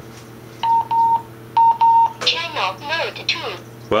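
Wouxun KG-816 VHF handheld radio beeping as it is switched back on: four short beeps at one pitch, in two pairs, starting about half a second in. A brief voice follows.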